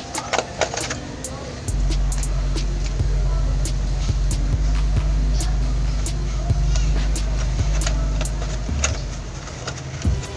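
Crackling and clicking of a cut plastic bottle being handled and tied around a tree stem. A louder low steady motor hum comes in suddenly about two seconds in and drops away near the end.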